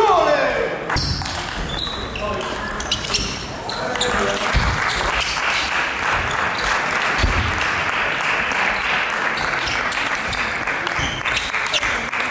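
Table tennis balls clicking off bats and tables during rallies in a large sports hall, over a steady murmur of voices from the hall. A brief, loud falling squeal comes at the very start.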